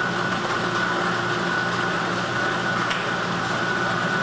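Lottery draw machine's air blower running with a steady hum and a faint whine while the last ball is blown up into the capture chamber; one faint click about three seconds in.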